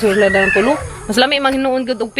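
A rooster crowing twice: two drawn-out calls, each held on one pitch and dropping at the end.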